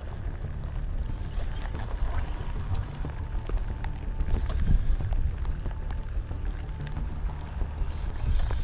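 Wind buffeting the microphone, a steady low rumble, with faint scattered ticks and rustles over it.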